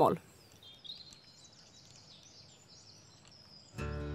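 Faint outdoor quiet with small songbirds chirping high and thin. A voice is cut off at the very start, and background music comes in near the end.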